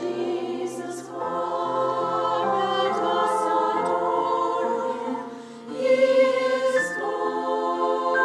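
Women's choir singing sustained notes in harmony, swelling loudest near the end.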